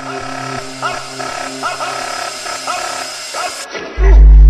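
Breakdown in a hardtek track: the kick drum and deep bass drop out, leaving held synth tones and a short rising sample repeated every half second or so. Near the end the high end is cut away just before the full beat comes back in.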